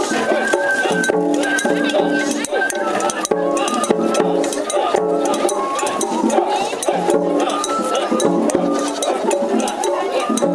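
Japanese festival music (matsuri-bayashi) from a decorated shrine float: drums beating under a stepping melody, with metallic clinks and voices mixed in.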